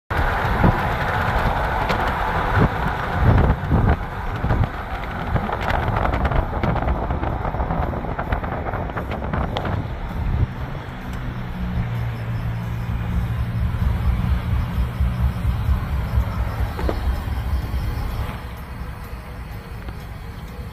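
A vehicle moving with rough road noise and a few knocks, then a steady low engine hum from about halfway through that fades near the end.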